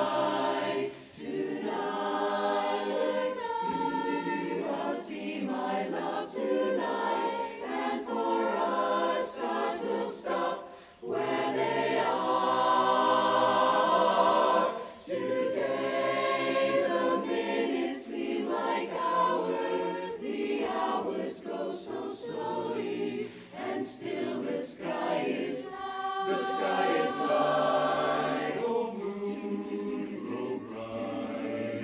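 Mixed-voice barbershop chorus of men and women singing a cappella in close harmony, with a few short breaks between phrases.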